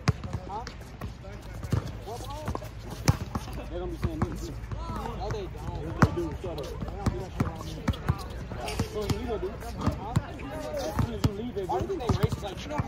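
A basketball bouncing on a hard outdoor court during a pickup game: sharp, irregular thuds from dribbling and the ball hitting the ground, over the voices of players talking.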